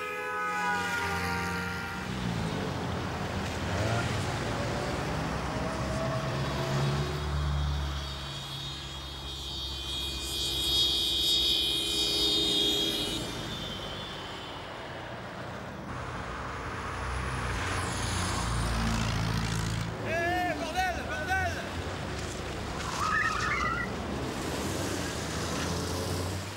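Road traffic: cars and vans passing with a low engine rumble and tyre noise that swells and fades as they go by. A high drawn-out tone sounds for a few seconds near the middle, and short voice-like calls come through about twenty seconds in.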